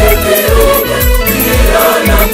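A Swahili gospel song: a choir singing over a steady drum beat and bass.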